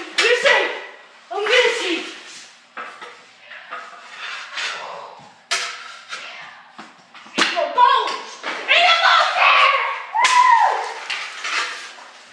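Floor hockey on a hard tiled floor: sharp clacks of hockey sticks hitting a ball and the floor, about five times, with boys' shouts and exclamations between and over them.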